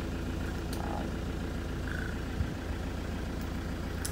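A 2005 Ford Transit's diesel engine idling steadily, heard from inside the cab, with a small click a little past two seconds in.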